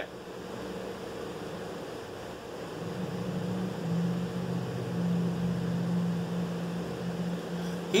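Steady hum of a window air conditioner, joined about two and a half seconds in by a louder low motor drone that swells, holds and eases off near the end.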